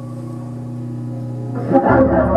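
Live drone music: a steady stack of low held tones, joined about three-quarters of the way in by a sudden, much louder and denser wash of sound.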